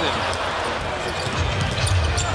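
Basketball being dribbled on a hardwood court over steady arena crowd noise, which swells a little in the second half.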